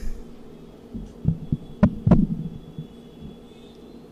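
Knocks and thumps picked up by a stage microphone, over a faint steady hum: a few dull thumps about a second in, then two sharp knocks, the loudest sounds, about two seconds in.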